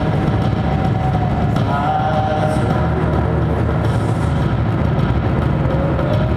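Live industrial electronic music: a dense, loud low rumbling drone from keyboards and electronics, with a few thin sliding tones over it and a slow rising tone near the end.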